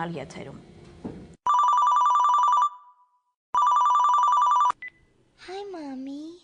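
A telephone ringing twice, each ring a rapid electronic trill about a second long, with a short pause between the rings.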